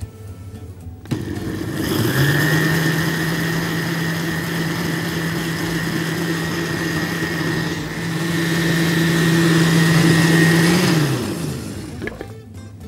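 Countertop blender motor starting about a second in and spinning up to a steady whine as it blends milk, dates and oats into a drink, getting somewhat louder toward the end, then winding down and stopping shortly before the end.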